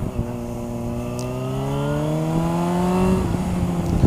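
Motorcycle engine pulling under acceleration, its pitch rising steadily for about three seconds and then levelling off near the end as the throttle eases. Heard onboard the bike.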